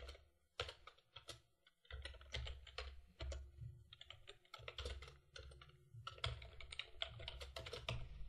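Faint typing on a computer keyboard: irregular runs of quick keystrokes, with a pause of about a second near the start and denser typing towards the end.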